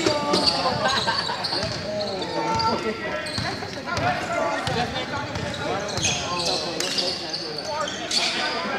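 A basketball being dribbled on an indoor court during play, its bounces coming through amid players' and onlookers' shouts and chatter.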